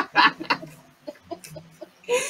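A woman laughing in quick, choppy bursts that tail off into faint chuckles about halfway through.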